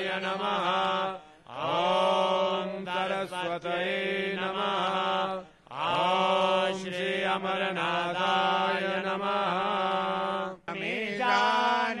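A voice chanting Sanskrit Hindu mantras in long, drawn-out melodic phrases, breaking off briefly twice for breath.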